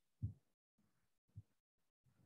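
Near silence: room tone broken by two faint low thumps, one just after the start and one about a second later.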